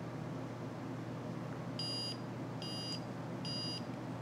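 InventioHD 1080P camera sunglasses beeping three times: short, high electronic beeps a little under a second apart, starting about halfway in. This is the glasses' signal that video recording has started.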